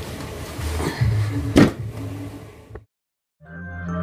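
Indistinct room noise and handling sounds with one sharp knock about a second and a half in; the sound then cuts out briefly, and music fades in near the end.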